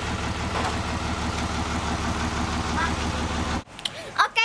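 A motor engine running steadily with an even low beat, cutting off suddenly near the end.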